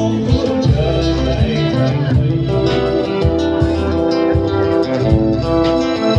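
Live band playing an instrumental passage: guitar and keyboard chords over a bass line and a steady beat.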